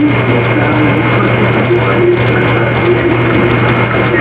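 Heavily amplified recording of steady hiss and low hum with a thin steady high tone, and faint wavering pitched sounds buried in the noise.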